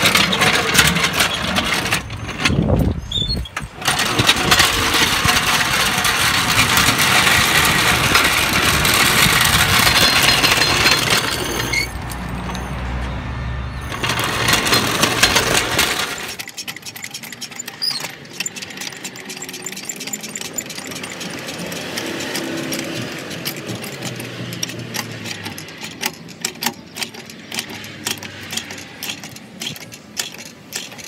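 Steel floor jack rattling as it is rolled across paving, with a loud, dense noise for about the first half. It then gives a run of irregular clicks as it is set and raised under a pickup's rear axle.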